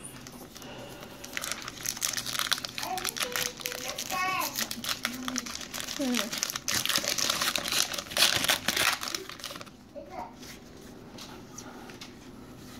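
Wrapper of a 2017 Topps Gypsy Queen baseball card pack torn open and crinkled by hand. The dense crinkling runs from about a second in until a couple of seconds before the end.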